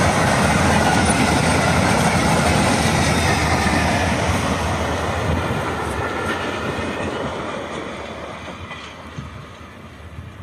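Freight train of covered wagons rolling past at close range, the wheels running over the rails with a clatter, then fading steadily over the second half as the tail of the train draws away.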